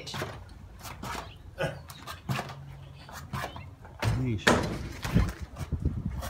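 Scattered light knocks and bumps on a wooden doorway beam as a person hangs and climbs on it, with a short voice sound about four seconds in.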